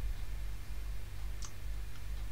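A single sharp computer mouse click about one and a half seconds in, over a low steady hum.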